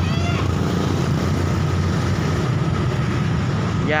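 Street traffic at an intersection: motorcycles and cars running, a steady low rumble of engines and road noise.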